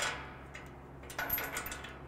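Metal frame parts clanking and clinking as they are handled and fitted together by hand. There is one sharp ringing clank at the start and a second, longer run of clinks a little after a second in.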